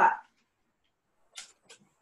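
Near silence, broken by two faint, very short scratchy sounds about halfway through; the hand mixer is not heard.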